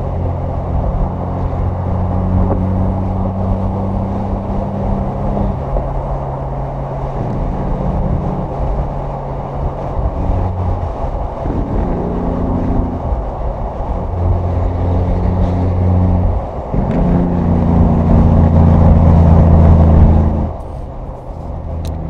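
Semi truck's diesel engine running at highway speed over road noise. Its low drone steps in pitch several times and grows louder near the end before dropping off suddenly.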